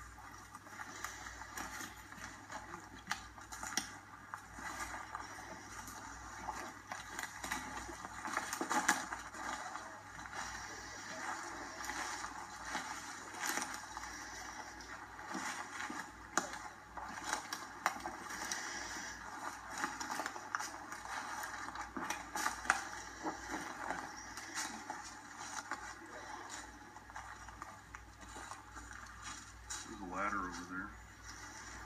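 Footsteps crunching through dry leaf litter and twigs on a forest floor: a continuous, irregular rustle peppered with small snaps and crackles as several people walk.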